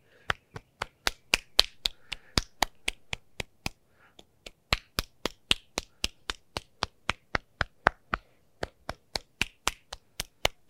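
An open hand slapping the forearm in quick, even strokes, about three or four slaps a second, in tuina-style self-massage, with a brief pause about four seconds in.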